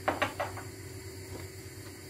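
Three light knocks in quick succession at the start, then a faint steady low hum.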